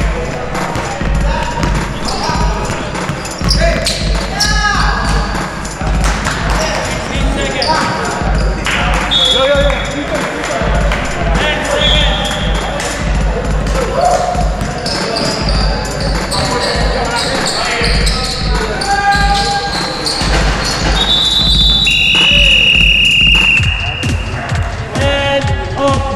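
Indoor basketball game: a ball bouncing on the hardwood gym floor, with repeated short high squeaks and players' voices calling out.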